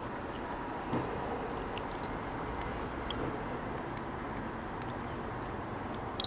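Steady background noise with a few faint clicks as the ESR meter's test clips are handled and clipped onto an electrolytic capacitor.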